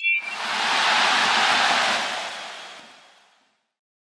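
A brief high ping at the start, then a soft rushing noise that swells for about a second and fades away over the next two, ending in silence.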